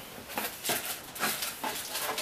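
Cardboard shipping box being handled and rummaged through: several short rustling, scraping bursts as the flaps and contents are moved.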